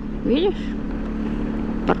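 BMW R 1250 GS boxer-twin engine running with a steady hum at low speed through town. A short rising vocal sound comes about half a second in.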